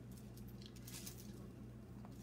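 Faint rustling of a sock being pulled and worked over a stuffed sock gnome, with a low steady hum underneath.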